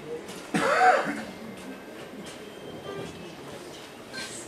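A brief loud vocal sound with a pitch that rises and falls, like a cough, about half a second in, followed by quiet hall murmur.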